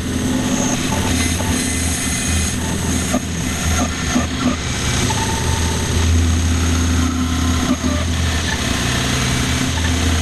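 Grizzly G0513 17-inch bandsaw ripping a wet mesquite log: a steady motor hum under the blade's cutting noise, the green wood hard to push through.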